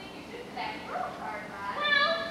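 A person's high-pitched voice: short stretches of voice, then, near the end, a long high drawn-out note.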